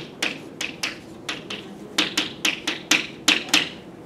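Chalk striking and stroking a blackboard as equations are written: a quick, irregular series of short, sharp taps.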